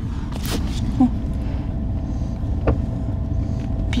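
Low, steady exhaust rumble of a 1950s car fitted with glasspack mufflers, heard from an adjacent car along with traffic noise.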